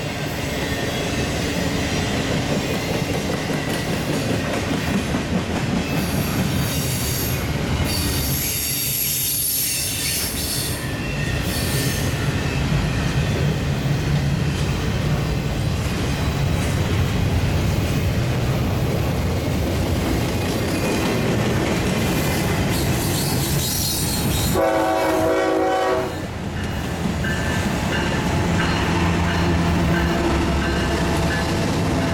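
Double-stack intermodal freight train rolling past: a steady rumble and clatter of wheels on rail, with high-pitched wheel squeals about a third of the way in. Near the end a short train horn blast stops abruptly. Then comes the low steady drone of a passing Norfolk Southern diesel locomotive.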